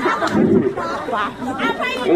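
Speech: a man talking into a handheld microphone, with chatter from other voices.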